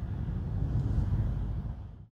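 Low, steady outdoor background rumble with no voice, fading down near the end and cutting off into silence.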